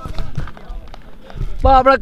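Quiet open-air background with a few faint clicks and distant murmur. About a second and a half in, a man's commentary voice starts loudly.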